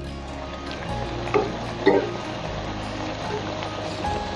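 Pakoras deep-frying in hot oil in a kadhai, a steady sizzle, under background music with low sustained notes. Two short, louder sounds come about one and a half and two seconds in.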